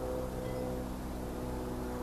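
Quiet, steady sustained tones with a low hum beneath, held through the pause, a few of the tones changing pitch about a tenth of a second in.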